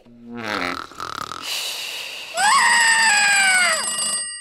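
Cartoon transition sound effects for an animated alarm clock. A falling tone and a short whoosh come first. Then, loudest, a bell-like ringing sets in with a tone that swoops up and slowly sinks, and it cuts off near the end.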